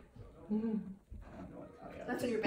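Quiet, short vocal sounds from a person: a low murmur, the clearest about half a second in, between near-silent gaps.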